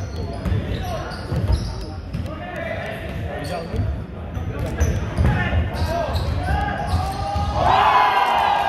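A basketball bouncing on a hardwood gym floor in repeated thumps, under players' and spectators' voices echoing in a large hall, with a louder shout near the end.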